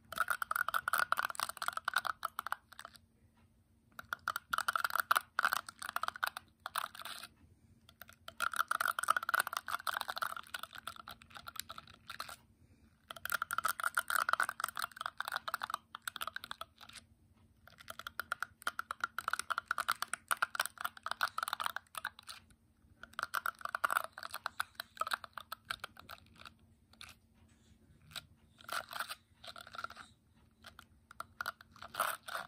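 Fingertips strumming and scratching across the bristles of a paddle hairbrush, making rapid dense ticking in stretches of two to four seconds with short pauses between, about seven times.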